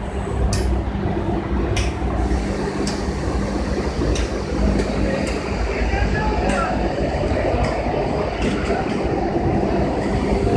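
Roller conveyor of an automatic weighing and inspection line running, a steady machine hum and rumble with sharp clicks about once a second.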